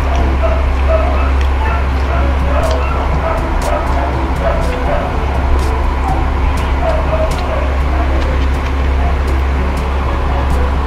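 Chewing and small mouth clicks from eating grilled chicken, over a loud steady low hum, with faint background voices and short pitched yelps.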